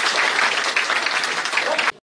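Audience applauding, a dense patter of many hands clapping that cuts off suddenly near the end.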